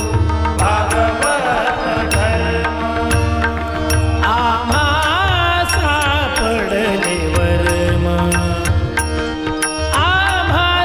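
A Marathi Varkari abhang being performed as devotional music: a male voice sings a winding melodic line over sustained instrumental accompaniment, with sharp beats struck at a steady pace.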